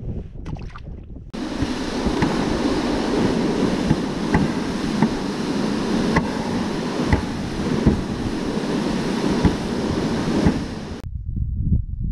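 A plastic ice-fishing sled dragged over snow-covered ice: a loud, steady scraping hiss with scattered knocks from the gear rattling inside. It starts suddenly about a second in, after some low wind rumble on the microphone, and cuts off sharply near the end.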